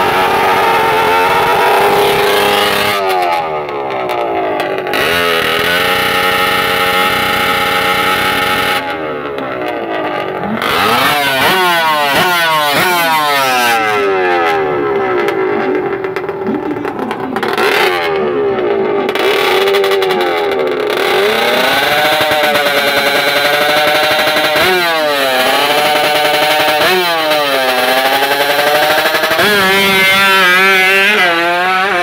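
Two-stroke reed-valve drag-racing motorcycle revving hard at the start line, its pitch rising and falling in repeated blips. Near the end it climbs steeply as the bike pulls away.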